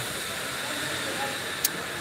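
Steady hiss of background noise in a large exhibition hall, with a faint distant voice about a second in and a single sharp click near the end.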